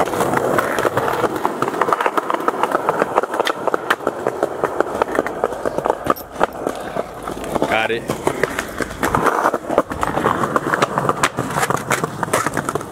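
Skateboard wheels rolling over rough street pavement in a dense rattle, with sharp clacks of the board as tricks are popped and landed.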